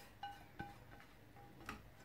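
Silicone spatula scraping a non-stick pan: faint short squeaks repeating at an uneven pace, with a couple of light taps.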